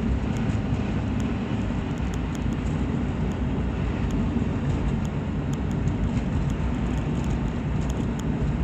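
Ford Explorer heard from inside the cabin while driving: a steady low rumble of engine and road noise.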